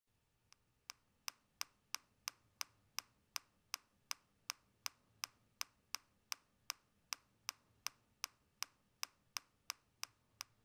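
A ticking sound effect: sharp, evenly spaced clicks at about three a second, the first one faint about half a second in.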